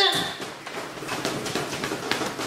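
A man laughing hard in breathy, near-voiceless gasps, with a scatter of small sharp claps and smacks from his hands.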